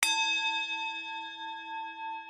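A single struck bell-like chime: one strike right at the start, then several clear, steady tones that ring on and slowly fade. It serves as a transition chime between a sponsor read and the conversation.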